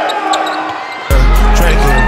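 Basketball game sounds: a few sharp knocks like a ball bouncing on a gym floor, with voices. About a second in, a hip-hop track with heavy bass cuts in abruptly and loudly.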